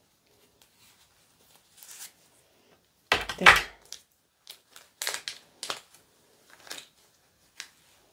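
Handling noise from working a reborn doll's vinyl leg and cloth body by hand: scattered short rustles and crinkles, with a louder burst lasting about half a second about three seconds in.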